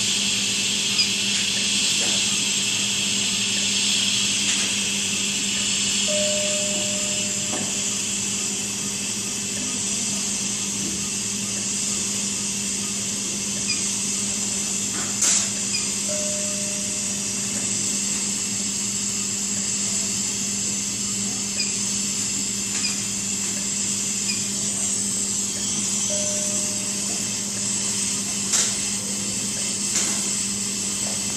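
Steady hiss of gas flow from a CareFusion Infant Flow SiPAP driver running its biphasic mode, over a steady low hum. A short, steady beep-like tone recurs about every ten seconds, with a few sharp clicks in between.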